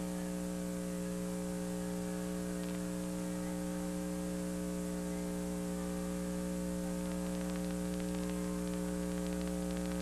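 Steady electrical mains hum on the recording's audio track, a stack of even buzzing tones that does not change, over faint static.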